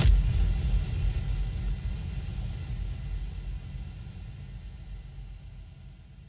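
A low, deep rumble that slowly fades away, left behind as loud house music cuts off at the start.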